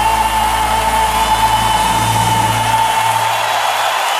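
A pop ballad's closing long held note, with the bass dropping out about three seconds in, over steady audience cheering and applause.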